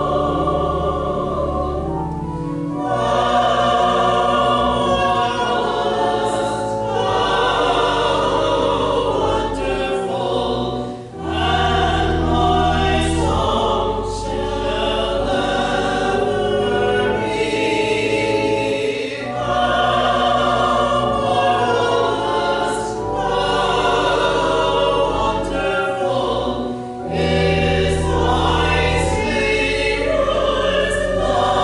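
Church choir singing a hymn or anthem in phrases, with pipe organ accompaniment holding long low bass notes under the voices.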